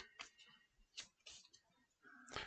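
Near silence with a few faint, short clicks of Pokémon trading cards being handled.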